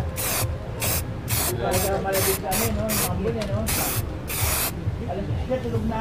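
Aerosol spray-paint can spraying metallic black paint onto motorcycle fairings in short, repeated hissing bursts, about two a second.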